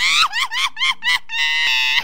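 A shrill, high-pitched voice screaming: a quick string of about five short cries that rise and fall in pitch, then one long held scream in the last half second or so.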